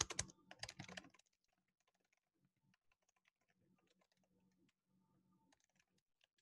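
Faint typing on a computer keyboard: an irregular run of quick key clicks, a little louder in the first second.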